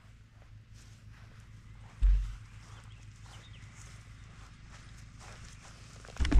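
Footsteps on grass close by, walking away, over a faint steady low hum, with a single loud low thump about two seconds in.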